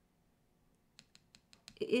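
Fingernail tapping on tarot cards on a desk: about six quick, sharp clicks in under a second, after a second of near silence.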